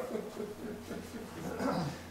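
An elderly man chuckling softly, voiced and wavering, with the word "do" spoken near the end.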